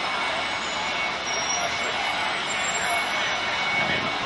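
City street traffic noise, a steady wash of passing cars and taxis, with faint voices mixed in.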